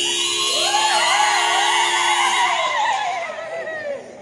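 A person's long, high-pitched wavering cry that rises, wobbles and then falls away over about three seconds, over a steady sustained tone that stops a little over two seconds in.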